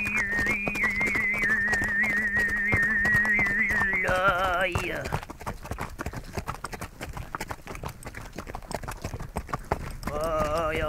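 Tuvan xöömei throat singing over the clip-clop of a horse's hooves: a steady low drone with a high, whistling overtone melody wavering above it. About four seconds in, the overtones slide and the voice breaks off, leaving only the hoofbeats.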